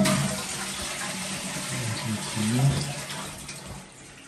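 Water running in a small tiled bathroom. It starts suddenly and fades out after about three and a half seconds.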